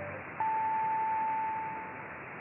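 Top-of-the-hour time-signal beep on a Japanese medium-wave AM broadcast, received from far away: a short lower pip, then a single long, steady, high beep starting about half a second in that marks the hour, over constant reception hiss.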